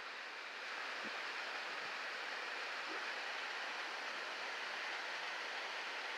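Steady, even rushing of a mountain stream's water running over granite rock.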